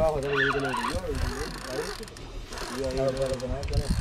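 A man's voice, talking or calling out indistinctly in two short stretches, over steady wind and water noise.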